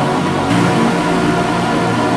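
Progressive house music in a drumless stretch: sustained synth chords and bass over a wash of noise, with the bass moving to a new note about half a second in.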